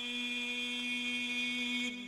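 Islamic call to prayer chanted by a single voice, holding one long steady note that falls away just before the end.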